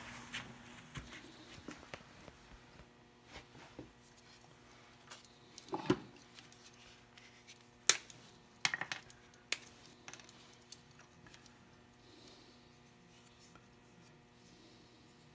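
Sparse light clicks and knocks from hands handling small pins and tools on a wooden model at a workbench, with a duller knock about six seconds in and the sharpest click about two seconds later, followed by a short cluster of clicks.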